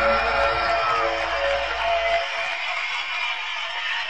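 Live rock band playing: electric guitar notes ring over a heavy bass. About halfway through, the bass drops out and a sustained guitar wash carries on.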